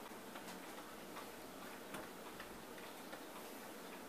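Brush dabbing and stroking glue onto a paper speaker cone: faint, irregular light taps and scratches over low room hiss.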